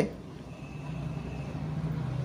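A steady low motor hum that grows a little louder about half a second in, with a faint high thin tone above it for a while.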